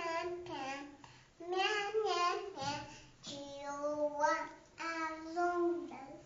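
A young girl singing unaccompanied, in short held phrases with brief pauses between them.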